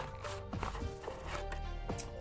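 A cardboard box and clear plastic tray being handled as a small device is slid out of its packaging, giving a few light clicks and scrapes, over soft background music.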